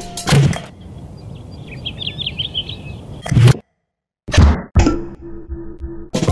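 Oversized foam-dart blaster shots at a glass bottle on a fence post: sharp thuds and whacks, one near the start and a cluster in the second half, with a hard cut to silence between. In the quiet stretch birds chirp faintly over outdoor ambience, and music comes in near the end.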